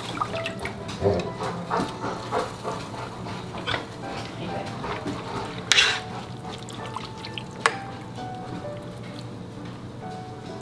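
Light background music over soft liquid sounds of glass noodles being pressed into a simmering pot of braised chicken stew. A short, louder noise comes about six seconds in, and a sharp click near eight seconds.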